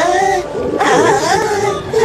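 A cartoon character groaning 'aah' with a wavering, whimpering pitch, in discomfort from an upset stomach.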